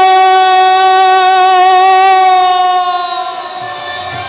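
A male kirtan singer holds one long, high sung note, swooping up into it, with a slight waver in the tone. It trails off about three seconds in.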